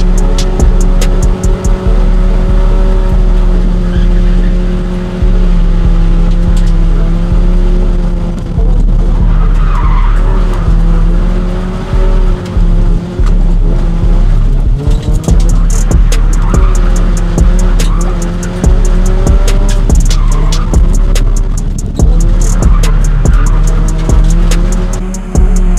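Toyota Corolla engine held at high, steady revs through a burnout, with tyres squealing on the pavement and the revs dipping briefly again and again. Music plays underneath.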